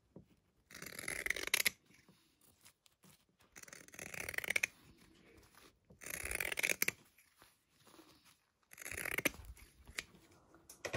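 Pinking shears clipping the seam allowance of a sewn cotton bow-tie piece, in four runs of crisp snipping about a second each, a couple of seconds apart.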